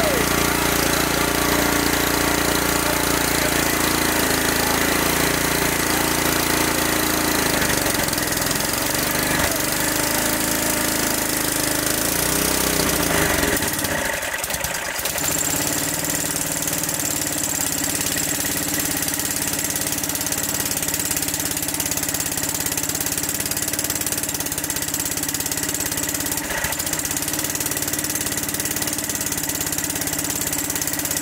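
Small carbureted generator engine, fitted with a Thunderstorm tube, running steadily. About 14 seconds in, the low rumble drops and the engine note shifts, then carries on steady.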